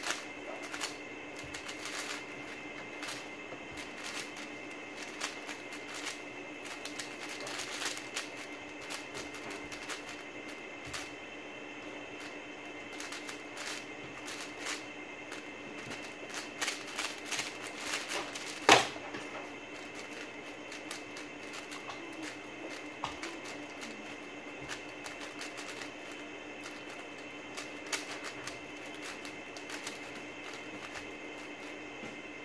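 Rapid, irregular plastic clicking and clacking of a WuQue M 4x4 speedcube being turned fast. There is one loud sharp knock about two-thirds of the way through, where the solve finishes and the timer is stopped.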